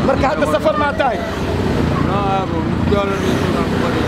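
Men talking face to face, over a steady low rumble.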